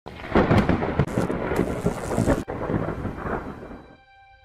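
Thunder crackling and rumbling, with a rain-like hiss; it breaks off sharply about halfway through, then a second stretch fades away toward the end.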